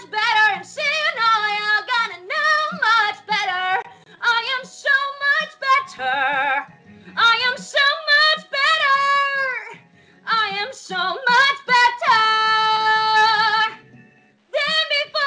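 A woman belting a musical-theatre song in a full chest voice, singing phrase after phrase with vibrato and short breaths between them. Near the end she holds one long belted note with vibrato for about two seconds.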